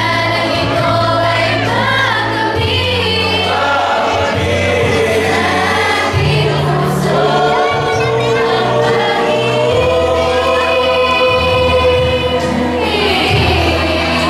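A group of young women and men singing a song together as a choir, over sustained low bass notes that shift every few seconds.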